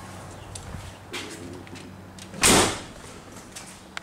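LS V8 engine idling with a steady low hum, just started after sitting about eight months; the owner says it is running rich and needs a tune. A car door shuts once about two and a half seconds in.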